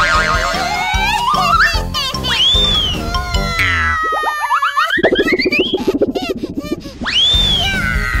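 Cartoon sound effects over lively background music: several springy boing glides that swoop up and then down, a warbling whistle that climbs over the first two seconds, and a fast buzzing rattle between about five and seven seconds in.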